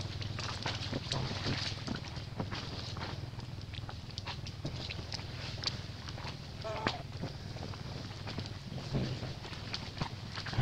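Dry leaf litter crackling and rustling under macaques moving over the forest floor, over a steady low hum, with one brief wavering high call about seven seconds in.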